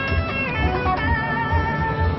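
Clean electric guitar played through a switched-on compressor-sustainer pedal, a short phrase of single notes ending on one note that rings on evenly.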